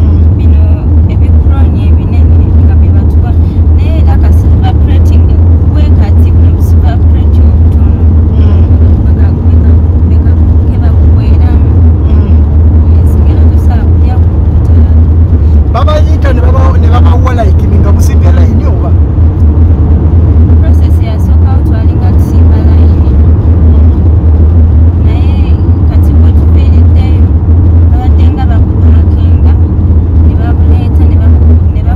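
Steady low rumble of a moving car heard from inside the cabin: road and engine noise, loud throughout.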